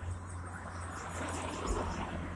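Steady low road noise from an approaching car, growing slightly louder.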